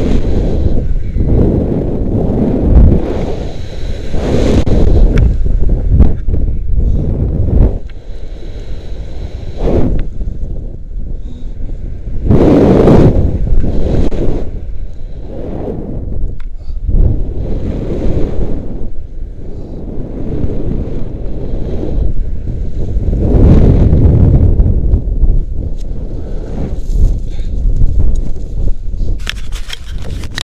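Heavy wind buffeting on an action camera's microphone as a rope jumper swings on the rope, rising and falling in loud gusts every few seconds with the swings.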